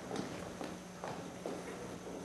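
Faint footsteps walking at an even pace, about two steps a second, over a low steady hum.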